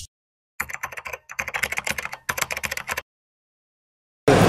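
Computer-keyboard typing sound effect accompanying text appearing in a logo animation: a quick run of key clicks starting about half a second in, with two brief pauses, stopping about three seconds in.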